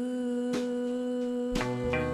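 Live band music: a long held note, tagged as humming, sustained over the band, with two struck chords about a second apart, the second bringing in bass notes.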